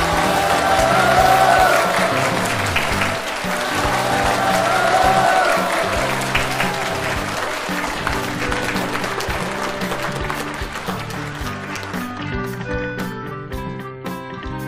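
An audience applauding with a few cheering voices, over background music with a steady bass line. The applause is strongest in the first half and dies away toward the end.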